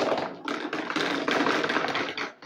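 Balls of a tabletop mini pool table clattering and rolling, a dense run of small clicks and knocks for about two seconds.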